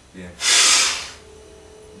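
A man's single brisk, forceful exhale through one nostril: a short, loud rush of breath lasting under a second. It is meant to blow the nasal passage clear of excess mucus during alternate-nostril breathing.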